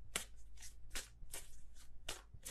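A deck of tarot cards being shuffled by hand, in short soft strokes about three a second.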